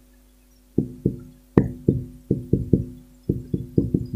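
Background music: a plucked guitar picking a quick run of single notes, about four a second, starting shortly after a brief pause.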